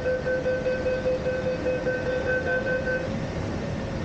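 A steady, buzzer-like electronic tone sounds inside a Peak Tram car, its higher edge dropping away about three seconds in while the lower tone holds on, over a low background rumble.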